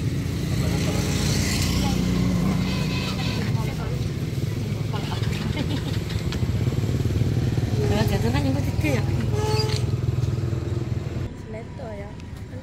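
A small engine running steadily at an even low pitch, with brief bits of talk over it; the engine sound cuts off near the end.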